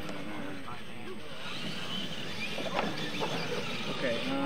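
Faint voices of people talking in the background over steady outdoor noise, with a few light knocks about three seconds in.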